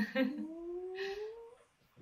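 A person's voice holding one long vocal sound that rises slowly in pitch for about a second and a half, with a brief breathy hiss partway through, then fading out. It follows a short laugh at the very start.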